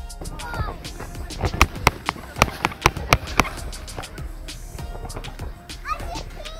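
Boots crunching on snow in a string of sharp, irregular steps, with children's voices calling out and music playing underneath.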